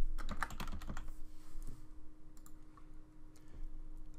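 Typing on a computer keyboard: a quick run of keystrokes in the first second and a half, then a few separate clicks.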